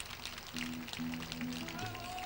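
Scattered audience applause, with a few acoustic guitar notes picked and left ringing in the middle.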